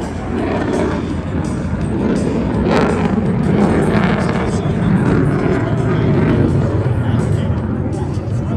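F-16 fighter jet's engine noise from overhead during an aerobatic display, a deep rumble that grows louder about three seconds in. Voices and music can be heard under it.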